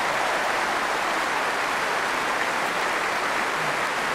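A large crowd applauding steadily.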